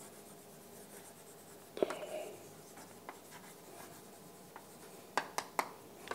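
Chalk writing on a blackboard: faint scratching strokes with a few sharp taps, one about two seconds in and three in quick succession near the end.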